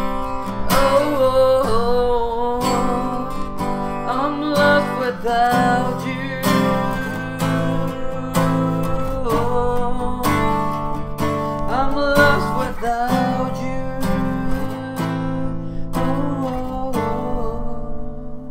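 Ibanez acoustic guitar strummed in a steady rhythm of chords, with a man's wordless singing gliding over it. The strumming thins out near the end.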